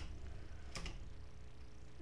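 Low steady electrical hum and background noise from the recording, with one faint short click about three-quarters of a second in.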